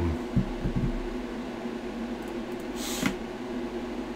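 Steady fan hum and room tone, with a few soft low thumps in the first second and a short breathy hiss about three seconds in.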